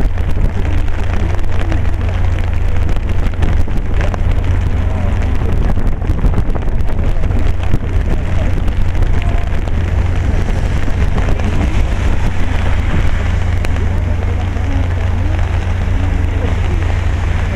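Steady rain, a dense crackle of drops, over a constant low rumble.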